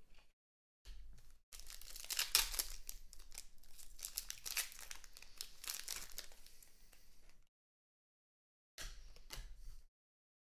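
A foil trading-card pack wrapper being torn open and crinkled by hand, a crackling run of about six seconds, then a short crinkle again near the end.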